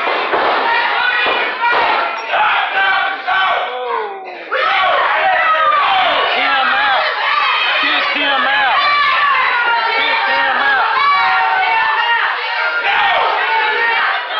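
Wrestling crowd shouting and cheering, many voices yelling at once, with a brief lull about four seconds in.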